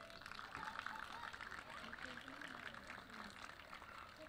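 Faint audience applause, a dense patter of many hands clapping, with a few voices murmuring underneath.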